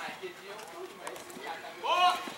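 Faint voices calling out on the pitch during play, with a louder shout starting near the end.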